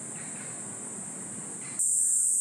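A steady, high-pitched chorus of summer forest insects, which jumps much louder near the end.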